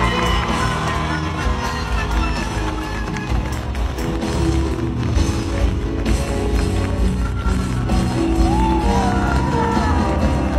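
Live band music at a concert: a strong bass and sustained chords, with a singing voice coming in near the end.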